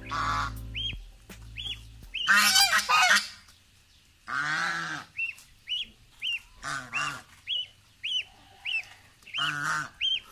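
Domestic geese honking, loudest in a burst about two seconds in, then single honks every couple of seconds, over a gosling's high peeping repeated about twice a second.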